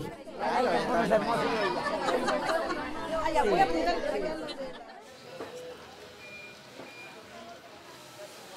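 Several people talking over one another in a hall, a general hubbub of greeting chatter that dies down about five seconds in to quiet room sound with a few faint, short, high tones.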